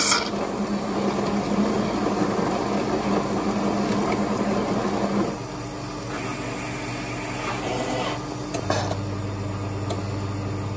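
Fully automatic coffee machine making a caffe latte: a rasping grind with a steady motor tone for about five seconds, typical of its built-in grinder grinding the beans, then quieter running. A steady low hum sets in near the end as the drink starts dispensing.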